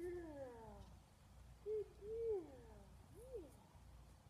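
A dog whining: a falling whine at the start, then several short whines about a second apart, each rising and falling in pitch.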